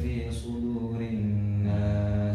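A man's voice chanting Arabic Quran recitation aloud, the imam leading the prayer, with long drawn-out melodic notes.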